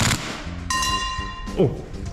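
Tokyo Marui next-generation electric airsoft gun (MP5SD6, integral suppressor) firing one quick three-round burst right at the start.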